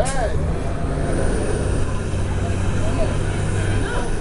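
City street noise: a steady low rumble of traffic with brief snatches of voices passing by.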